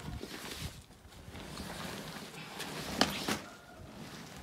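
Rustling and scraping of a folded inflatable kayak's fabric hull being pulled out of its nylon carry bag, with a sharp knock about three seconds in and a smaller one just after.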